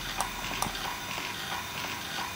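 A few faint clicks from keys pressed on a ProMinent Compact controller's keypad, over a steady background hum, all within the first second or so.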